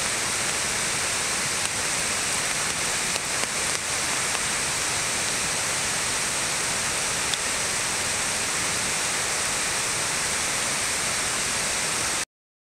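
Water pouring over the crest of a concrete dam spillway in operation: a steady, even rushing noise that holds without change.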